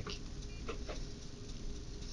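Steady low room hum with a few faint clicks in the first second, from a computer mouse being scrolled and clicked to zoom the display.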